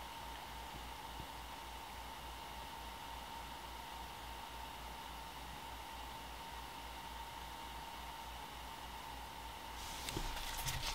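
Quiet room tone: a steady faint hiss with a thin, steady whine running under it and a faint low pulsing, and nothing else happening.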